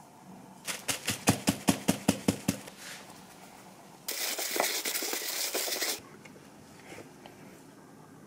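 A metal measuring cup tapped about ten times in quick succession against a glass mixing bowl, knocking out potato starch. About two seconds later comes a steady hiss lasting about two seconds that stops abruptly, as salt is sprinkled from a spoon onto the dough.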